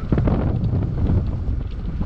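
Wind buffeting the microphone of a motorcycle moving at road speed, a steady low rush.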